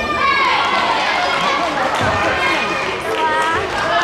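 Voices calling out and chatting in a sports hall between badminton rallies.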